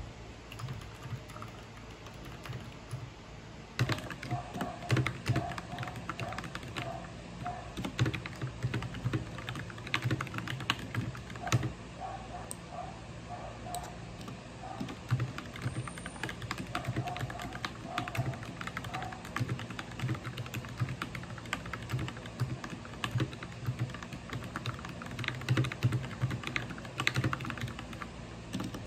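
Typing on a Vissles V84 wireless mechanical keyboard: a steady, irregular run of keystroke clicks, louder from about four seconds in.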